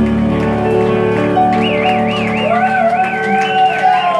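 Live music: an electronic keyboard holds steady chords, and from about halfway through a high tone wavers up and down in an even vibrato over them.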